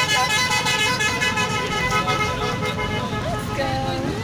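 A horn sounding one long steady note that fades out about two and a half seconds in, over the hum of an urban park with people's voices.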